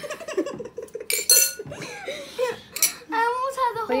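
A metal spoon and bowls clinking against each other, two sharp ringing clinks about a second apart, amid children's giggling and talk.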